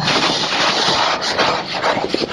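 Automatic car wash spraying the car: a loud, steady rush of water jets hitting the windshield and body, heard from inside the car.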